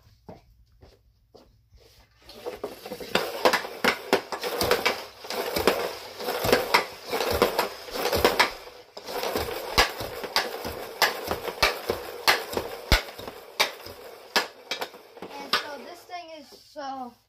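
A hockey stick blade, a CCM Ribcor Trigger 4 Pro, taps a green training puck back and forth across plastic dryland tiles, with the puck scraping along the tiles between hits. After a quiet first two seconds or so, a quick, uneven run of clacks keeps going to the end.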